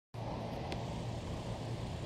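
Steady low rumble of a slowly moving car, with a faint tick under a second in.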